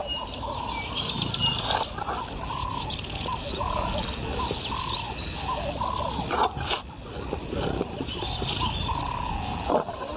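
Male lions growling low as they feed on a zebra carcass. Birds call over them again and again, with a steady high insect drone behind.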